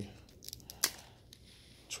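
A few small plastic clicks as the cap is twisted off a Cosentyx Sensoready injection pen, the sharpest a little before the middle.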